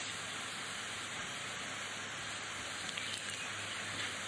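Steady hiss with a faint low hum: the background noise of a digitised lecture recording.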